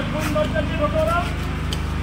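A heavy diesel machine engine idling steadily, with people talking over it.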